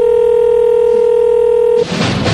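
Telephone ringback tone over a phone line: one steady tone held for about two seconds, then cut off sharply, as a dialled call rings at the other end.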